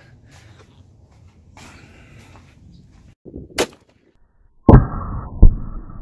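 An outdoor blast: a sudden loud bang, then a second bang about three quarters of a second later, with a rumbling noise between them. Before the bangs there is only faint background noise and one sharp click.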